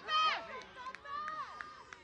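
Women shouting during open play in a rugby match: high-pitched calls, the loudest right at the start and more about a second in, with a few short sharp ticks among them.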